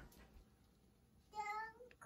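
A toddler's high-pitched voice: one short sung or called note about a second and a half in, rising slightly at its end, after a quiet stretch.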